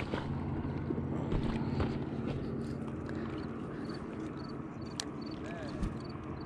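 A steady low engine-like hum over outdoor background noise, fading somewhat after the first few seconds.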